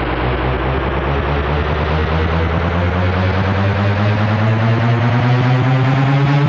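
Electronic dance track in a beatless breakdown: a thick synthesizer drone rising slowly and steadily in pitch, like an engine winding up, building toward the next drop.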